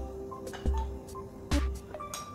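Background music: a light tune of held notes over a steady beat, with a deep bass thump and a sharp click just under a second apart.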